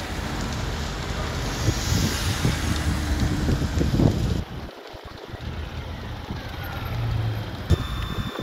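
Outdoor fire-scene background: a steady low engine-like rumble with wind buffeting the microphone. It drops off abruptly about four and a half seconds in to a quieter, gustier background.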